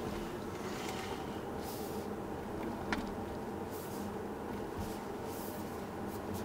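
Steady road and tyre noise heard inside the cabin of a 2017 Tesla Model S, an electric car with no engine sound, driving slowly at about 35–40 km/h. A single faint click comes about halfway through.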